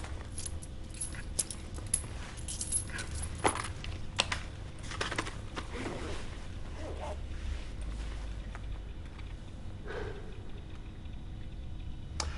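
A hand rummaging inside a small fabric shoulder bag, with rustling and many light clicks and rattles, busiest over the first half and thinning out later.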